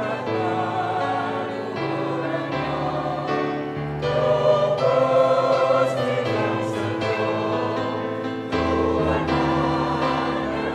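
Mixed choir of women's and men's voices singing a Javanese hymn in sustained chords, swelling loudest about four to six seconds in.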